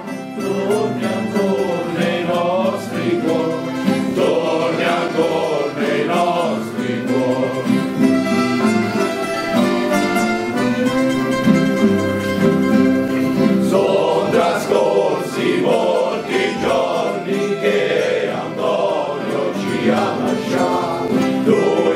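A group of voices singing together in chorus, a slow song of long held notes, with instrumental accompaniment.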